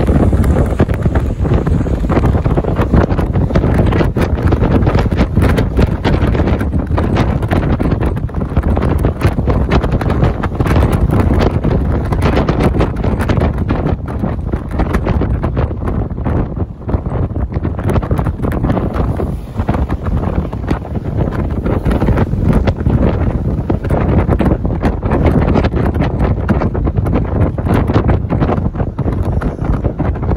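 Wind buffeting the microphone of a camera riding on a moving vehicle. The rush is loud and gusty, with the vehicle's road and engine noise beneath it.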